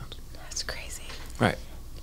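Only quiet speech: soft voice sounds, then a short spoken "right" about one and a half seconds in.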